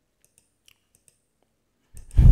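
A few faint computer mouse clicks, spread over the first second or so, against an otherwise quiet room.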